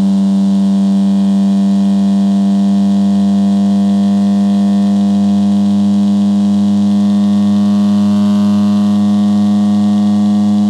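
Low-frequency test tone played on a Motorola Play (2023) phone, heard as a loud, steady buzzing hum with a stack of overtones.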